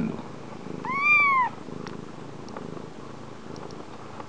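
A small kitten mews once about a second in, a single high cry that rises and falls. Around it, soft low purring and a few faint clicks.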